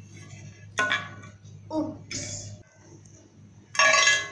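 Scattered knocks, clinks and rustles of plastic toys being handled, with the loudest burst near the end as a badminton racket in its plastic wrapper is lifted.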